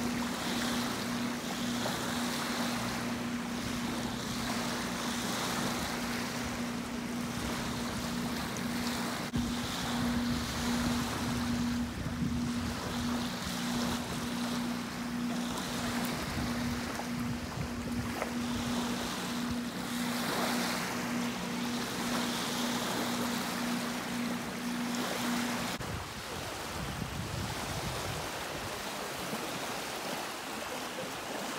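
Small Lake Michigan waves washing and lapping on the shore, with wind on the microphone. Under it a steady, slightly pulsing engine hum, matching the motorboat out on the water, runs until it cuts off about 26 seconds in.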